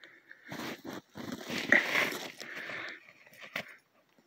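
Crunching and scuffing in snow in a few short rough bursts as a dog roots and bites at its plastic Frisbee buried in the snow, with a sharp click near the end.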